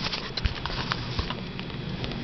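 Soft, irregular taps and rustles of movement close to the microphone as a baby rolls over on a quilt, with the camera handled right beside him.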